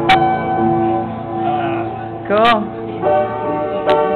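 Piano being played: struck notes and chords that ring on, with a strong attack just after the start. A voice briefly slides in pitch about two and a half seconds in.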